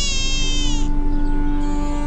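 A newborn baby crying: one long, thin, wavering wail in the first second and a fainter cry starting near the end, over steady held music notes.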